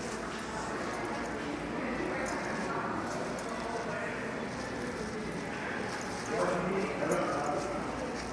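Indistinct voices of people talking in the background, with one voice briefly louder about six seconds in.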